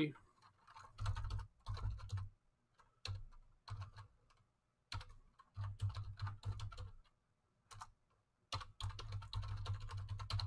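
Typing on a computer keyboard: several short runs of rapid keystrokes with brief pauses between them.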